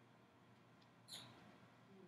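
Near silence: room tone, with one brief, faint high-pitched hiss about a second in.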